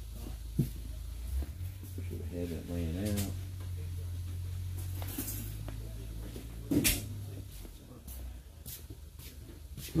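Scattered knocks and clatter of someone rummaging off-camera for a part, with one sharp clack about seven seconds in, over a steady low hum. A short voice-like sound comes a little over two seconds in.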